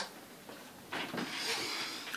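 Handling noise from a handheld camera: a brief rustling scrape about a second in as the camera is moved and re-aimed.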